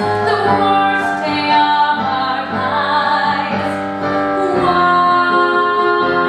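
A woman singing over instrumental accompaniment, with long held notes.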